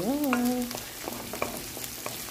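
Chopped onion sizzling in hot oil in a nonstick pan, with a steady hiss. A wooden spoon stirring it gives scattered light clicks and scrapes.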